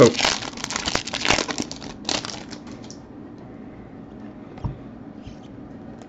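A trading-card pack's foil wrapper being torn open and crinkled by hand over about the first three seconds.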